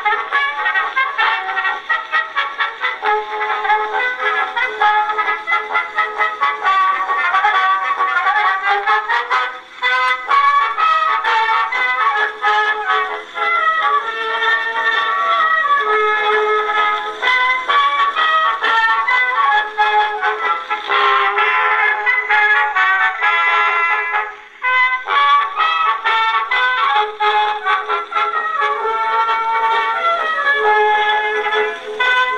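A 1909 Edison Fireside Model A cylinder phonograph playing an instrumental record acoustically through its horn. The sound is thin, with no bass, and breaks off briefly twice, about ten seconds in and again near 24 seconds.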